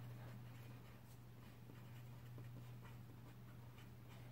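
Faint scratching of a felt-tip pen writing on paper, over a low steady hum.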